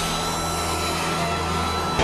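A steady mechanical roar with a low hum and a thin, high whine, even in level throughout.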